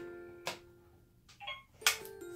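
Three sharp plastic clicks from a toy cash register as a pretend card is swiped through it and handled, over faint background music.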